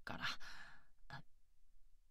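A woman's low voice trails off at the end of a word into a sigh, followed by a short breath about a second later.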